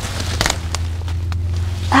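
Leaves and twigs rustle and crackle in a few short bursts as hands reach into low shrubbery, over a steady low rumble.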